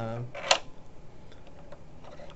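Hand handling the plastic housing and ceiling-mount clamps of a UniFi access point: one sharp click about half a second in, then a few faint ticks.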